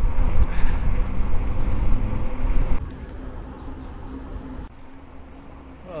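Wind buffeting the microphone of a moving bicycle, with road noise from the ride, as a loud low rush. About three seconds in it drops suddenly to a much quieter rush, and quieter again near five seconds.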